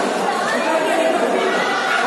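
Many voices talking and calling out at once, echoing in a large covered sports hall: the chatter of volleyball players and spectators during play.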